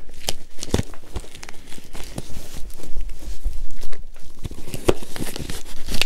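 Cardboard shipping box being handled and torn open: packing tape and cardboard ripping and crinkling, with scattered sharp knocks and clicks.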